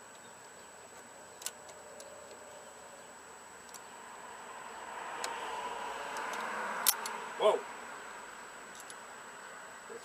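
Small metal clicks of pliers and a tool at a garden tractor's starter solenoid and battery terminals, with one sharp snap about two-thirds of the way in and no engine cranking. A soft rush swells and fades in the middle.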